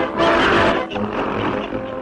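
1930s cartoon orchestral score with a loud rushing swoosh in the first second, as a witch's broomstick shoots up into the air.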